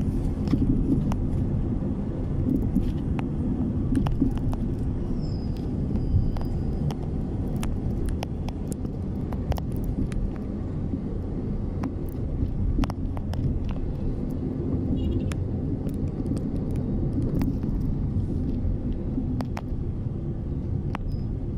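Low steady rumble of a car driving along a street, with many sharp clicks and rattles scattered through it.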